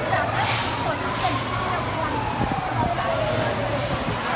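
Emergency vehicle siren wailing, its pitch slowly rising and then falling over a few seconds, with short bursts of hiss about half a second and a second in.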